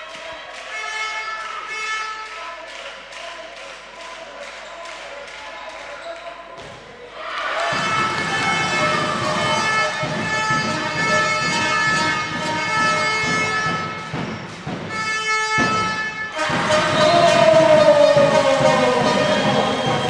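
Sports-hall game sound from a handball match: a ball bouncing on the hall floor amid crowd noise and steady held tones. It gets louder about seven and a half seconds in and again near the end.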